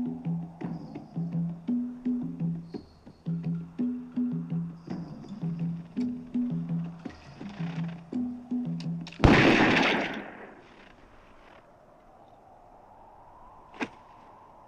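Film score with a low, repeating two-note pulse and percussive knocks, about two notes a second. About nine seconds in, a single loud revolver shot cuts it off and rings out for about a second. A short click comes near the end.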